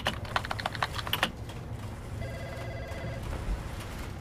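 Keyboard typing: a quick run of clicks for about the first second. About two seconds in, a desk telephone rings with an electronic trilling tone for about a second.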